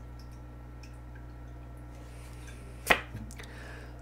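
A single sharp click about three seconds in, followed by a couple of faint ticks, as a playing-card-sized oracle card is picked up from the deck. A low steady hum sits underneath throughout.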